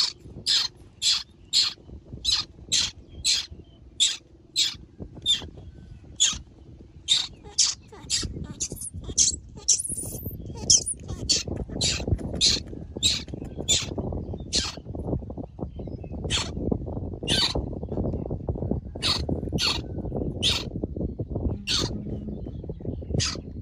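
Newborn monkey screaming in short, high-pitched shrieks as it is handled and dressed in a shirt. The shrieks come about two a second at first, then more spaced out. From about eight seconds in, a rustling of hands and cloth runs under them.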